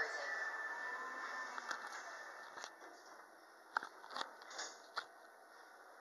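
Elevator doors sliding closed, a steady whir that fades over the first couple of seconds, followed by a few sharp clicks as the car gets ready to go up.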